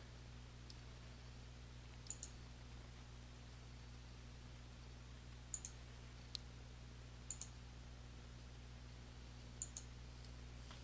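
Computer mouse button clicks, mostly in quick pairs, about five times over the stretch, above a faint steady low electrical hum.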